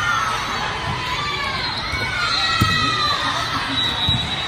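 Many girls' voices shouting and cheering together, overlapping, with one sharp smack of a volleyball being hit about two and a half seconds in.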